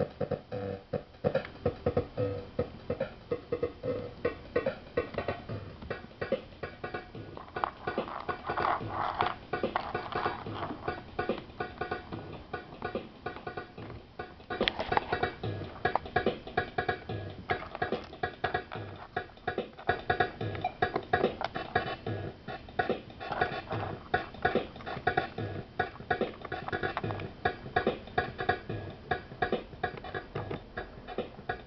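Circuit-bent Yamaha RX-120 sample-based drum machine playing a glitchy, stuttering beat as its joystick and bend points are worked. A low drum hit recurs about once a second under dense rapid clicks, with busier, louder passages around a third and halfway through.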